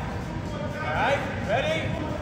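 Indistinct speech: a voice talking in a short unclear phrase over a steady low background rumble.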